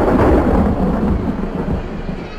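Audience applauding in a large hall, dense clapping with a low rumble that dies down toward the end.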